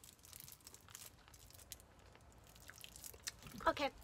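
Small plastic candy wrapper crinkling as it is unwrapped by hand: faint, irregular crackles and ticks, with one spoken word near the end.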